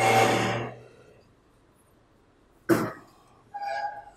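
Someone coughing: one loud cough at the start, then a second, shorter cough just under three seconds in.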